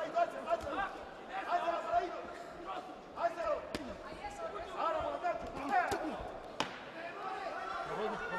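Boxing arena crowd noise with voices calling out, and a few sharp thuds from the ring, clearest about three and a half seconds in and again a little after six and a half seconds.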